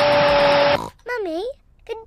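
A loud, harsh hissing noise with a steady tone running through it cuts off suddenly under a second in. After a short gap, a high cartoon voice, Peppa Pig's, makes brief sounds.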